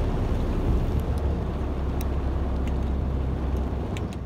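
Steady low rumble of a tractor-trailer's diesel engine and tyre noise on a wet road, heard inside the cab, with a few faint ticks.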